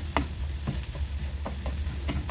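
Wooden spatula scraping and tapping in a nonstick frying pan, stirring scrambled egg with chopped vegetables as it sizzles, about five or six strokes. A steady low hum runs underneath.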